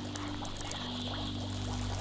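Low, steady suspense drone with a faint hiss underneath, held through a dramatic pause before a game-show result is announced.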